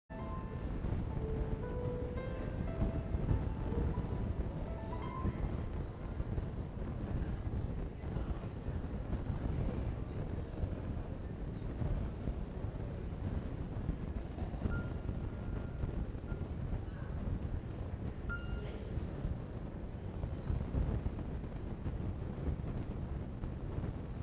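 Indistinct buzz of conversation from a congregation gathered in a church before the service, a steady low hubbub with no words standing out.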